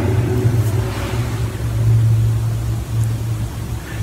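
A steady low hum with a faint hiss above it, and no speech.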